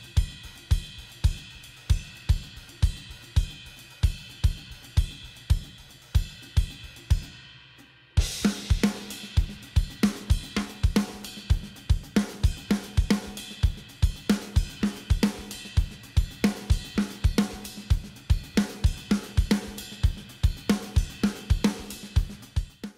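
Acoustic drum kit with cymbals playing a steady beat: evenly spaced bass drum hits under ringing cymbals. About eight seconds in, a cymbal crash and snare hits come in and the full kit plays on.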